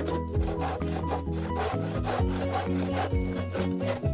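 Hand saw cutting through a dry bamboo pole with repeated back-and-forth rasping strokes, over background music.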